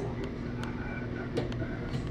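Quiet room tone: a steady low hum with a few faint light clicks.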